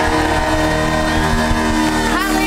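Live worship band music holding a steady chord with strong bass, between sung phrases and with no voice over it.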